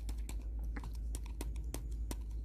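A small jar of dried cannabis buds being shaken and tapped to pour them out, the buds and jar making a run of irregular light clicks, several a second.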